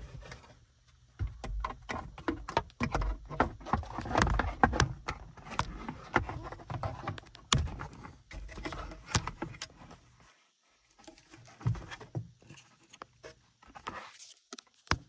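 Handling noise: irregular clicks, taps and rustling of hands working plastic interior trim and a wiring harness, busiest in the first two thirds, then a short lull before a few more clicks.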